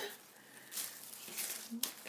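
Faint rustling of an artificial-flower head wreath and felt being handled, with one light click shortly before the end.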